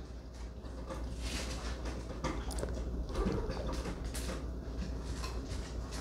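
A dog drinking water, then walking across a wooden floor, heard as a few soft irregular scrapes and knocks.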